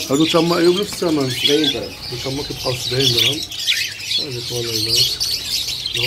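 Many short, high chirps from a crowd of caged budgerigars chattering. A man's voice repeats a short call over them throughout and is the loudest sound.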